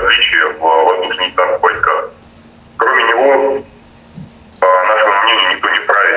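Only speech: a thin, narrow-band voice talking, with two short pauses in the middle.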